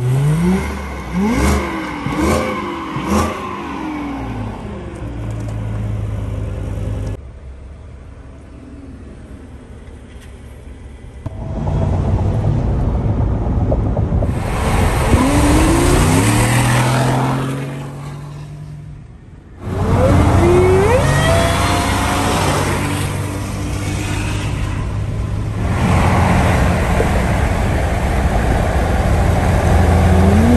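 Supercharged 5.0L V8 of a Ford F-150 accelerating hard several times, its engine pitch climbing in repeated sweeps over steady road noise. The runs are separated by abrupt breaks about a quarter of the way in and again about two thirds of the way in.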